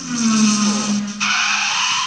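A loud sound effect with no speech: a low, slightly falling hum for about a second, then a harsh hiss that cuts in suddenly and holds for most of a second.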